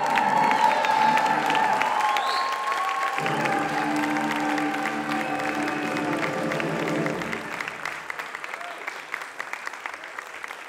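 Audience applauding, with cheers and shouts at first and music with held notes playing under it; the clapping thins out after about eight seconds.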